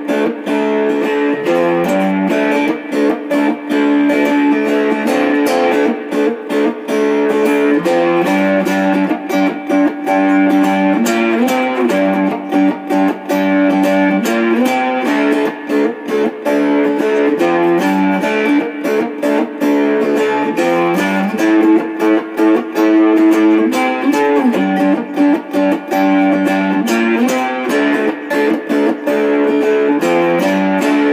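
Amplified three-string cigar box guitar in an octave-fifth tuning (D–A–D, a power-chord tuning), played continuously with plucked notes and barred chords in a bluesy style. The phrases are separated by brief gaps.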